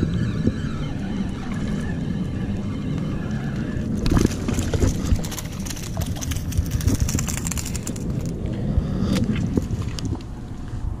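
Spinning reel being cranked as a hooked speckled trout is reeled in, with the fish splashing and thrashing at the surface in a rapid run of sharp splashes from about four seconds in until near the end. A low wind rumble on the microphone runs underneath.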